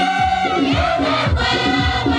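Large mixed choir of young voices singing a Christian song in harmony, with a low beat keeping time about twice a second.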